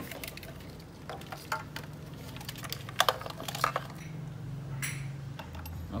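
Light clicks and clatter of the engine wiring harness's plastic connectors, clips and wires knocking against the engine bay as the harness is pulled out, over a faint steady low hum.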